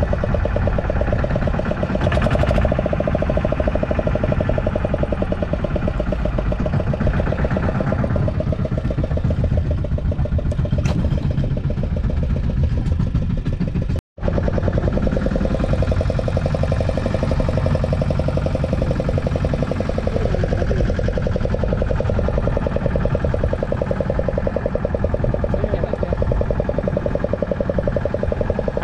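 A boat's engine running steadily at idle, a continuous low hum. The sound cuts out for an instant about halfway through.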